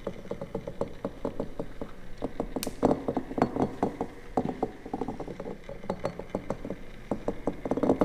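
Glass bottles of a kinetic sculpture clinking as one, filled with black granules, is lowered onto the base of another. It makes a dense, irregular run of small glassy clicks, several a second.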